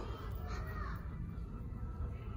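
Steady background noise of a large store, with a faint brief sound that rises and falls in pitch about half a second in.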